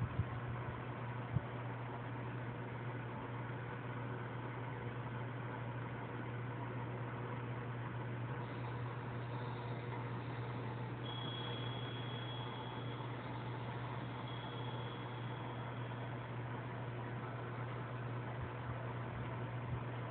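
A steady low hum under an even hiss, with a couple of faint clicks in the first second and a half.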